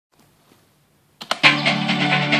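Near silence, then a couple of sharp hits and a synthesizer techno track that starts playing about a second and a half in, holding a steady, full level.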